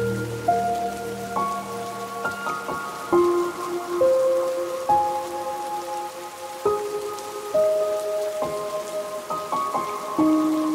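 Steady rain sound under a slow, gentle instrumental melody of single ringing notes. Each note starts crisply and is left to ring, with a new one coming roughly every second.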